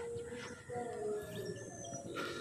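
Faint bird calls: a few short, steady notes at different pitches, some low and some high, over quiet open-air background.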